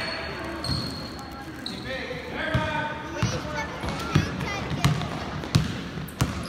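Basketball bouncing on a hardwood gym floor during play, a thud every second or so, with sneakers squeaking and voices calling out in the hall.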